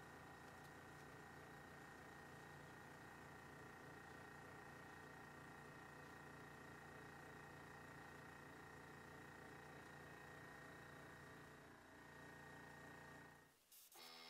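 Near silence: faint, steady room tone that drops away shortly before the end.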